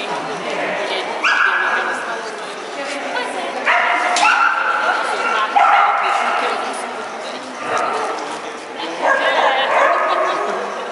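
A dog barking and yipping in repeated high-pitched calls while it runs an agility course.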